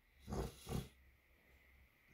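Two short, breathy throat sounds from a man, about half a second apart, followed by faint room noise.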